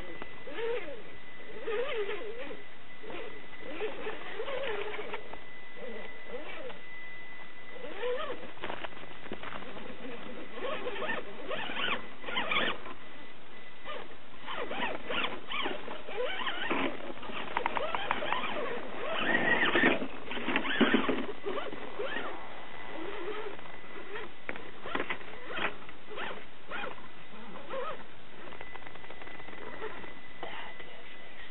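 Axial AX10 1:10-scale RC rock crawler's electric motor and gears whining, the pitch rising and falling with throttle, with clattering and scraping of tyres and chassis on rock, loudest about two-thirds of the way through.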